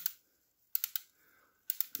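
Ratchet screwdriver's ratchet clicking as it is turned by hand, in two short runs of a few sharp clicks about a second apart.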